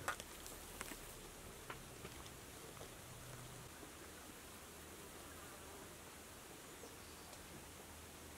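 Very faint sound: a few soft rustles and light ticks from zucchini leaves being handled in the first couple of seconds, then a low steady hiss.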